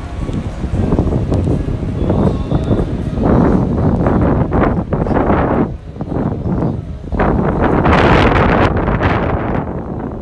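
Wind buffeting the microphone in gusts, a loud rushing noise that swells and dips, strongest around four and eight seconds in.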